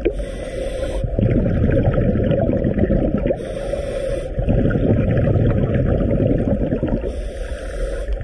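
A scuba diver breathing through a regulator, recorded underwater: three hissing inhalations of about a second each, roughly every three and a half seconds, with the rumble of exhaled bubbles between them.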